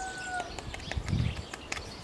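Red watercolor pencil scraped across 100-grit sandpaper, a faint dry scratching, as pigment dust is color-sanded onto wet watercolor paper. A steady held tone cuts off about half a second in.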